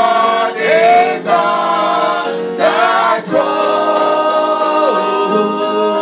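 Gospel song: several voices singing short phrases, then holding long notes through the second half.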